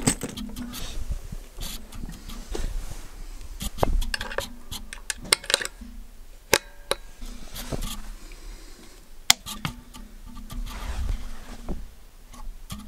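Handling noise of an electric guitar being set up: scattered clicks, knocks and rattles as it is gripped and a cable jack is plugged into its output socket, several sharp clicks standing out, with a low hum coming and going.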